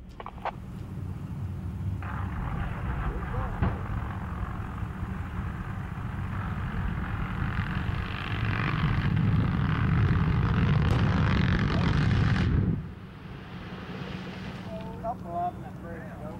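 A line of buried explosive charges detonating one after another along a pipeline trench: a continuous rolling rumble of blasts with a few sharper cracks, swelling louder for several seconds before stopping abruptly near the end.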